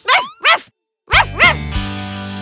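A cartoon character's short laugh, a brief moment of complete silence, then about a second in a music cue starts with a cartoon dog's yips over its opening.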